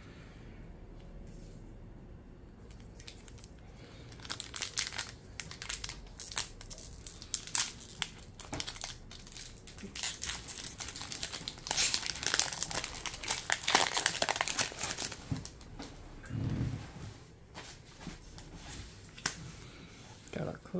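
Foil booster-pack wrapper crinkling and tearing as it is pulled open by hand. The crinkling starts about four seconds in, is densest in the middle and thins out near the end.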